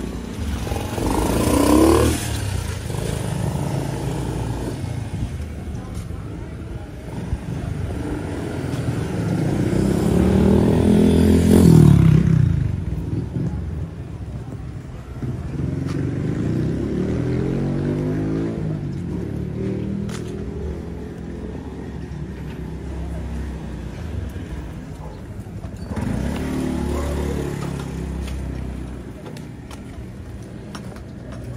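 Motorcycle engines passing along a narrow street several times, each rising and then falling in pitch; the loudest pass comes about ten to twelve seconds in, with street background between.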